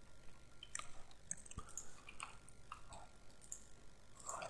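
Faint, scattered small clicks, about half a dozen over a few seconds, over quiet room hiss.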